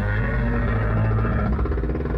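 Low, steady rumbling drone with dark music from an animated show's soundtrack.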